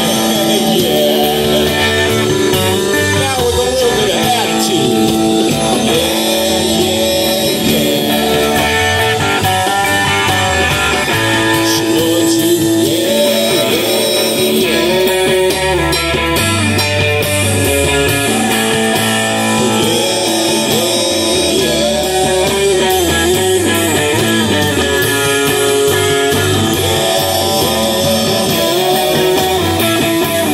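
A live band playing an instrumental passage with no singing. An electric guitar plays a lead line with bent notes over bass guitar and drums.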